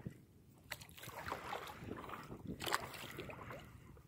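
Faint water lapping and splashing against a paddleboard on open water, with a few light knocks.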